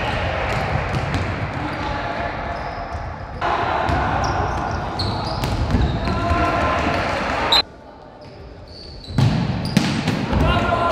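Futsal being played on an indoor court in a large hall: players shouting, the ball being kicked with sharp knocks, and short high squeaks of shoes on the court floor. The sound drops away suddenly for a second and a half near the end, then returns.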